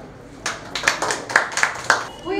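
Scattered hand claps from a few people, about eight uneven claps starting about half a second in, the loudest near the end.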